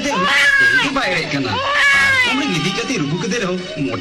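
A person's high-pitched voice in three drawn-out phrases with long sliding pitch.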